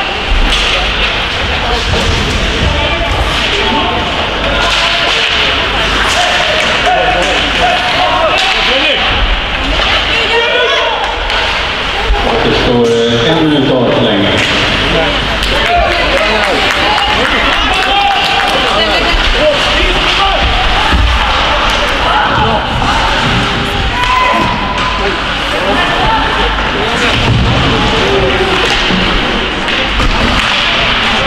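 Ice hockey play: sticks and puck knocking, and the puck slamming against the boards, over steady shouting and chatter from players and spectators.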